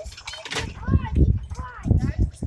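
A child's voice making two short calls, over low thumps and rumble.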